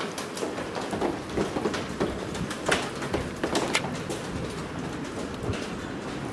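Footsteps on wet stone paving: irregular clicks and taps over a steady outdoor hiss, a few sharper ones about halfway through.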